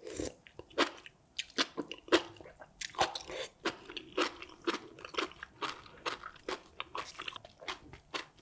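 Close-miked chewing of a mouthful of spicy noodles. A bite right at the start is followed by a steady run of sharp mouth clicks and smacks, several a second.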